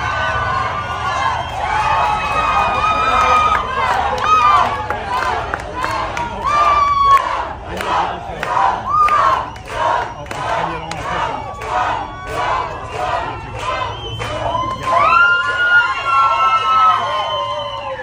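Packed indoor crowd cheering, shouting and screaming, with rhythmic clapping at about two claps a second through the middle stretch.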